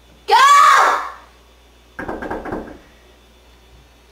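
A loud shout with a rising-then-falling pitch, then, about two seconds in, a quick run of about half a dozen knocks on a front door.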